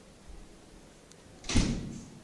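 A single door thump about one and a half seconds in, over faint room tone.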